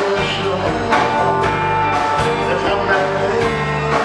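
Live blues band playing: electric guitars and drum kit, with a long held lead note from about a second in.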